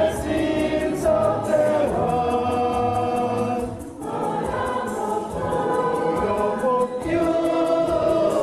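Church choir and congregation singing a hymn in held, sustained notes, with a light quick percussion tick keeping a steady beat underneath.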